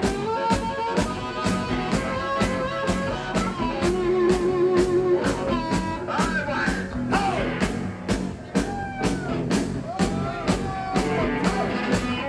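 Live blues-rock band playing an instrumental passage: electric guitar and drum kit keeping a steady beat of about four strokes a second, with a harmonica played into the vocal microphone, its notes bending and wavering.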